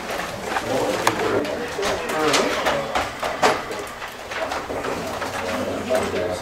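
Low murmured chatter of several people talking at once around a conference table, with papers rustling and a few sharp clicks and knocks.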